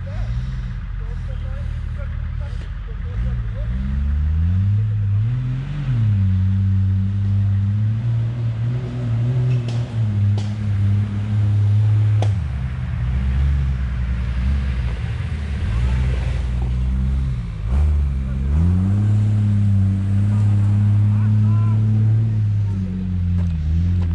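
Humvee's diesel V8 engine working up a steep dirt climb, its revs rising and falling several times. A few sharp clicks or knocks come through around the middle.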